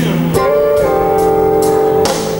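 A live blues band playing an instrumental fill between sung lines, with guitar and keyboard. One note slides up about half a second in and is then held.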